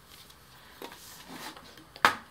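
Faint handling of a handwoven towel and a vinyl mini-blind slat: soft fabric rustling with a light click a little under a second in.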